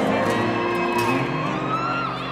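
Live acoustic rock band playing an instrumental stretch of the song, acoustic guitar chords ringing out.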